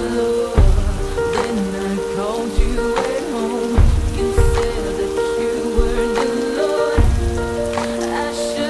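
Rain falling steadily, mixed with a song: held chords over a deep bass note that pulses every second or two.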